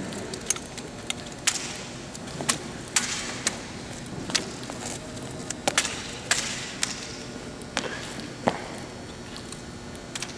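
Drill rifle being spun, tossed and caught by hand: irregular sharp slaps and clacks of palms striking the rifle, about one or two a second, over a steady low room hum.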